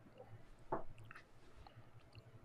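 Faint mouth sounds of someone sipping whiskey from a tasting glass: a short sip about three-quarters of a second in, followed by a few tiny wet clicks of lips and tongue.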